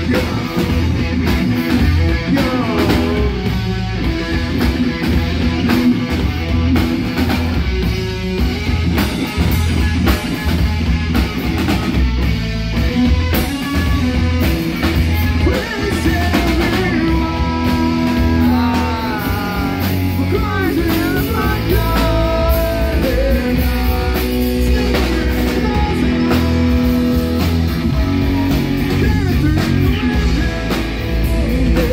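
Live rock band playing loud and steady: electric guitars and a full drum kit. A melodic line bends up and down in pitch over the band in the second half.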